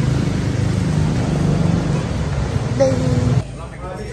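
Street traffic noise with a motor vehicle engine running close by: a steady low hum that cuts off abruptly about three and a half seconds in.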